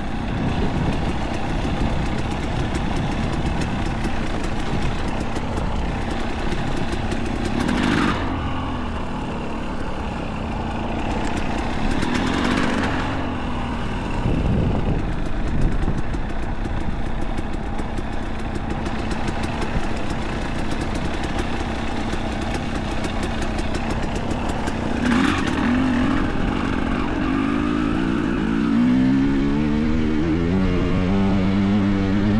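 Two-stroke enduro motorcycle engine running under way, with the throttle opened in short surges about eight, twelve and twenty-five seconds in, and the revs rising near the end.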